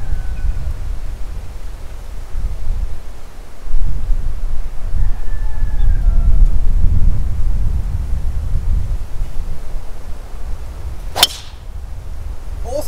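Wind buffeting the microphone in low gusts, then, near the end, one sharp crack of a golf driver striking the ball off the tee.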